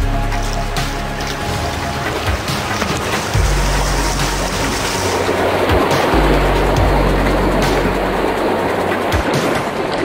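Background music over the rush of river rapids as a kayak runs through choppy whitewater, the water hiss strongest around the middle.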